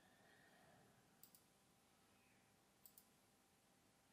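Two quick double clicks of a computer mouse, faint over near silence, about a second in and again near three seconds.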